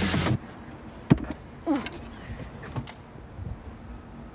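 A white shelf unit being loaded into a car's open boot: one sharp knock about a second in, then a short falling squeak and a few light clicks as it is handled.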